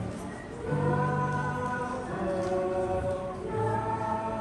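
Choral music: a choir singing slow, held notes, moving to a new chord about once a second.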